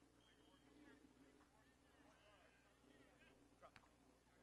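Near silence with faint, distant voices of people talking, and one short sharp click near the end.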